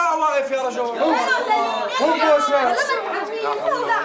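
Several voices talking over one another.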